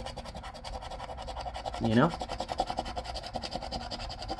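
A metal coin scraping the latex coating off a paper scratch-off lottery ticket in quick, even strokes.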